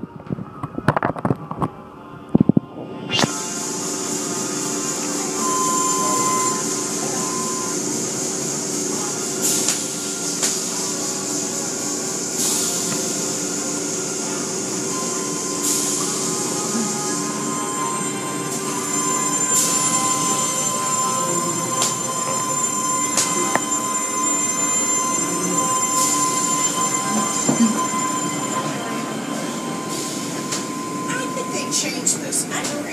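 Automatic car wash machinery heard from inside the car: water spraying and cloth strips and spinning brushes slapping and scrubbing over the body and windows, over a steady machine whine and hum. The sound is broken and uneven for about the first three seconds, then settles into a steady rush with occasional sharp slaps.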